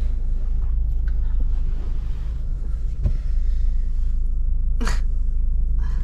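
Steady low rumble of a car heard from inside the cabin, with one short sharp noise about five seconds in.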